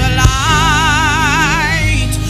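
Live gospel worship band with a singer holding one long note with a wide vibrato, over drums and bass; a sharp drum hit comes just before the note starts.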